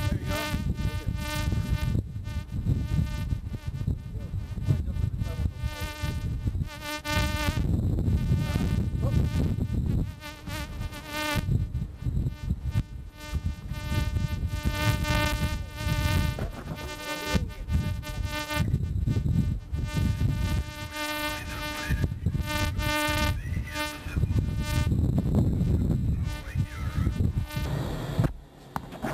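A steady electrical buzzing hum, one pitch with many overtones, dropping out briefly a few times, over an uneven low rumble.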